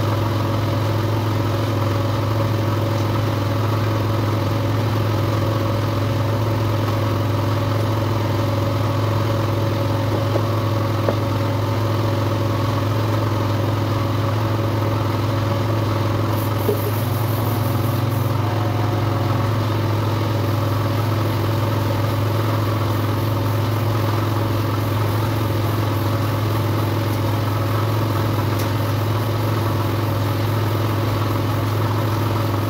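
A steady, unbroken low machine drone, like a motor running continuously at constant speed, with a faint click or two.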